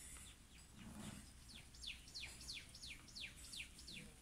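A bird singing faintly: a quick series of about nine descending whistled notes, about three a second, starting about a second and a half in after a few fainter notes.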